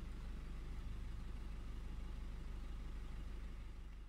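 Steady low rumble of a running engine, fading out near the end.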